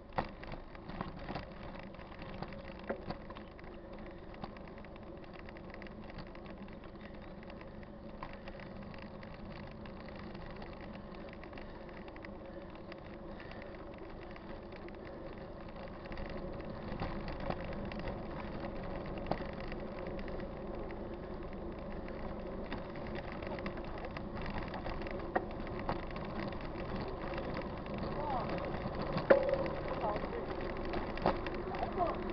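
Mountain bike riding on a paved road, heard from the rider's camera: steady rolling noise with small clicks and rattles, getting louder about halfway through.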